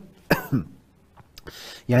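A man clears his throat once: a short, sudden sound with a falling pitch, followed by a pause before he speaks again.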